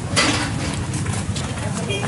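Busy eatery hubbub: diners talking in the background, with a short clatter just after the start and light clicks of spoons and chopsticks against bowls.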